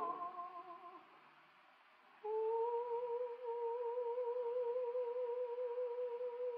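Operatic singing on an old, muffled opera recording: a phrase fades out in the first second, then a brief hush, and at about two seconds a soprano voice enters on one soft note held with a gentle vibrato.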